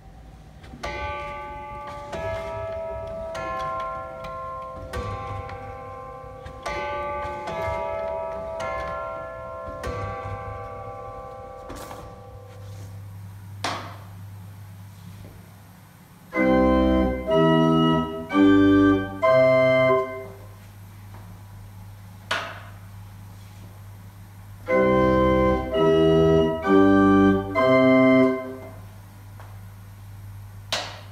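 Hanging metal tubes of a chime set struck one after another, each note ringing on and overlapping the next. Then a small model slider-chest pipe organ with four notes and nine stops plays its four notes in turn, twice, over the steady hum of its blower, with a single click before each run of notes.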